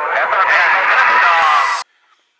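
Intro voice with a radio-like sound following a countdown, with a hiss building behind it that cuts off abruptly near the end.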